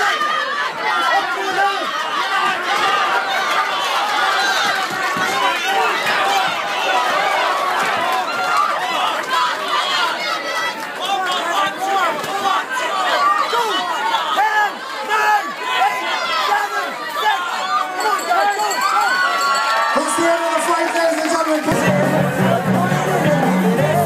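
Ringside crowd at a boxing bout shouting and cheering, many voices overlapping at a steady high level; music starts up near the end.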